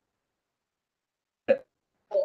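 Near silence, then one brief vocal sound from a person about one and a half seconds in.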